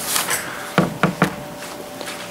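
A short rustle, then two knocks about half a second apart.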